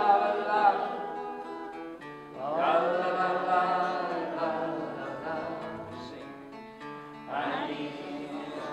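Folk song played on a strummed acoustic guitar under a wordless melody of long held notes. New phrases start about two seconds in and again near the end.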